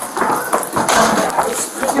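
A close-range physical struggle picked up by a body-worn camera: clothing brushing against the microphone, scuffing and irregular knocks, with strained voices mixed in.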